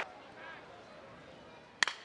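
Low stadium crowd murmur, then near the end a single sharp crack as the bat meets a pitched changeup and puts it in play on the ground.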